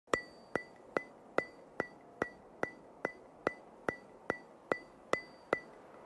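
Steady ticking: about fourteen sharp clicks, evenly spaced at roughly two and a half a second, each with a short high ring. It stops near the end.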